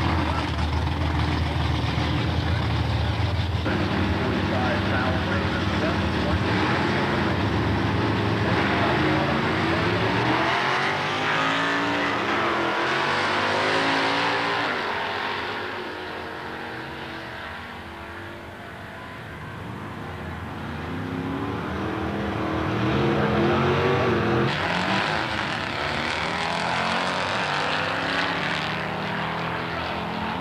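Drag-racing cars' engines running hard at the starting line, then launching at full throttle and accelerating down the strip, their pitch sweeping up and down with the gear changes and the sound fading with distance about two-thirds of the way in. The sound swells again with another pair of cars accelerating hard near the end.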